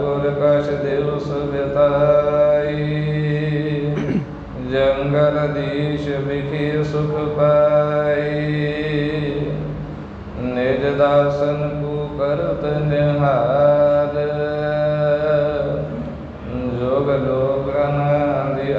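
A man chanting devotionally in long, drawn-out sung phrases of several seconds each, with short breaks between them, over a steady low drone.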